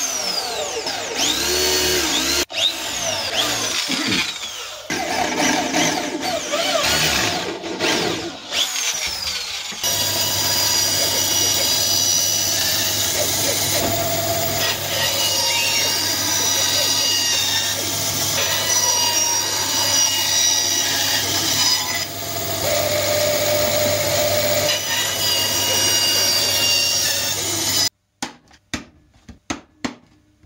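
A power drill with a hole-saw bit boring through a wooden board, its pitch gliding up and down. About ten seconds in, a band saw takes over, running steadily as it cuts the board. It stops abruptly shortly before the end.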